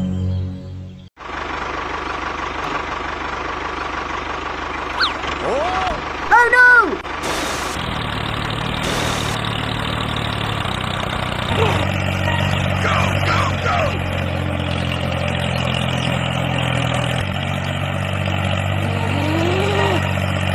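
A tractor engine running steadily, its low hum setting in about eight seconds in. Short rising-and-falling vocal cries sound over it around six seconds and again later.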